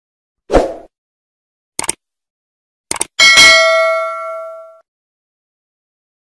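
Subscribe-button animation sound effect: a soft thump, two quick clicks, then a bell-like ding that rings out and fades over about a second and a half.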